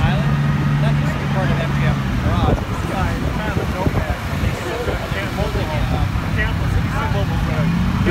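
A vehicle engine running with a steady low hum that drops away about two and a half seconds in and comes back near the end, under the chatter of people's voices.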